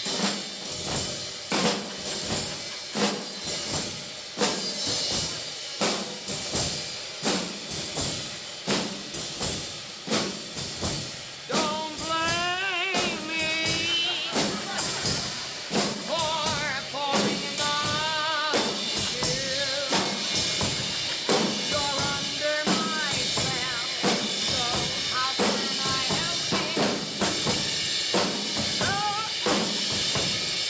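A large ensemble of drummers playing drum kits together, beating out a steady, busy rhythm of snare, bass drum and cymbal hits. About twelve seconds in, a wavering melody joins over the drums, breaks off, and comes back from about sixteen seconds on.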